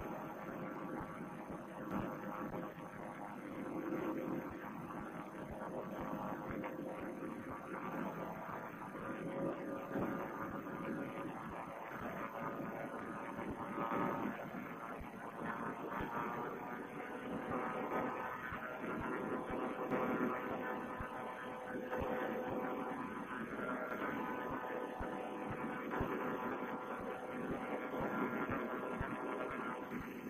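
Two-stroke paramotor engine (Vittorazi Moster) droning steadily in flight, heard through a Bluetooth headset microphone that cuts off the high end, with small rises and falls in loudness.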